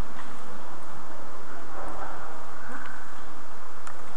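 Steady, loud hiss of recording noise, with a few faint clicks scattered through it.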